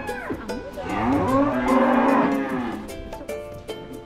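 Holstein dairy cow mooing: one long, loud moo that rises and then falls in pitch, beginning just under a second in, after the tail of an earlier moo at the very start.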